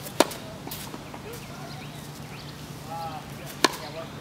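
Tennis racket striking the ball on two serves: two sharp pops about three and a half seconds apart, one just after the start and one near the end.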